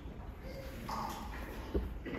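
A lull in a school string orchestra's playing: a couple of faint held notes over stage noise, with a single sharp knock near the end.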